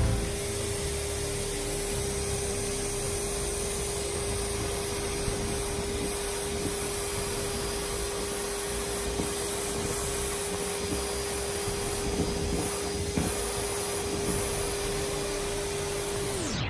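Numatic George cylinder vacuum cleaner running steadily: an even rush of airflow with a steady motor tone over it.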